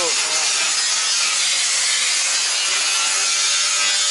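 A steady, harsh, hissing noise at an even loudness, with faint voices underneath.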